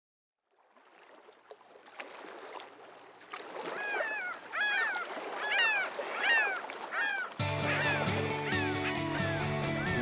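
Outdoor marsh ambience fading in, then a bird calling over and over, about one call every three-quarters of a second. A music track comes in about seven seconds in, with the calls continuing faintly under it.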